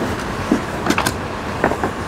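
Whiteboard marker squeaking in a few short strokes as lines are drawn on the board, over a steady background hiss.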